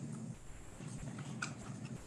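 Quiet room tone with a few faint taps or clicks, about a second in and again shortly after.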